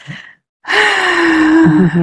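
A woman's long voiced sigh, starting with a breathy rush about half a second in and held for over a second on one slowly falling tone.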